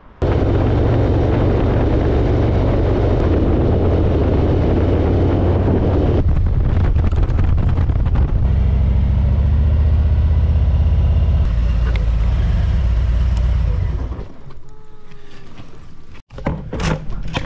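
Harley-Davidson Road King's V-twin engine running at a steady speed under loud wind rush on the move. The wind eases after about six seconds, and the sound drops off sharply about two seconds before the end.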